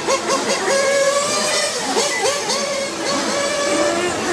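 Several radio-controlled racing motorcycles running together, their motors whining in overlapping tones whose pitch holds, then rises and falls as the riders throttle on and off through the corners.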